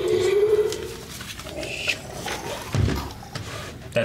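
Electronic Infinity Gauntlet toy playing its sound effect: a steady hum that fades out about a second in, then a rising tone, with a thump near three seconds in.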